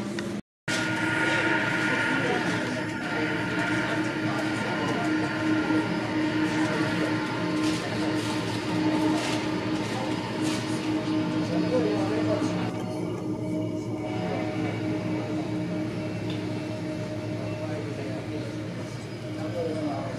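Jet engines of a taxiing Boeing 747 freighter, a steady rumble with a constant hum, heard through the terminal window glass. The sound drops out completely for a moment about half a second in.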